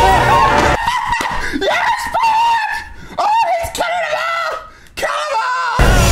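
A person screaming in a string of high-pitched, wavering shrieks with short breaks between them.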